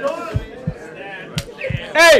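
Faint voices in a room with a few dull low thumps, and one sharp smack about one and a half seconds in.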